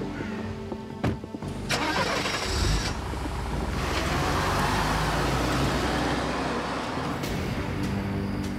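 A car engine starts about two and a half seconds in and the car drives off, its sound swelling and then fading away, over quiet background music.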